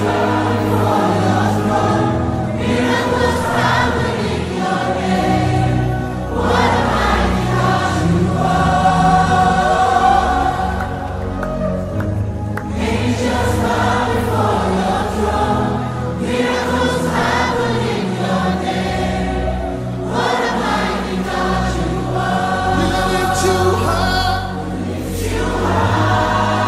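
Gospel worship song with a choir singing in phrases of a few seconds over band backing with a heavy bass.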